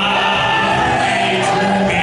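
Men's vocal trio singing a gospel song in harmony, holding long notes over a live band of drums and guitar.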